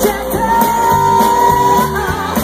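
Live band performing: a woman singing over electric guitars and drums, with one long held note from about half a second in until near the end.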